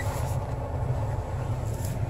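A Toyota Corolla S's 1.8-litre four-cylinder engine idling, a steady low hum heard from inside the cabin just after a cold start-up.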